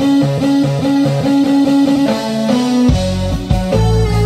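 Live band music: a repeating guitar riff of short pitched notes, joined by a heavy bass about three seconds in.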